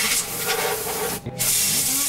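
Compressed-air duster blowing dust out of a desktop computer's CPU cooler through its red extension straw: two loud hissing blasts with a short break between them, about a second in.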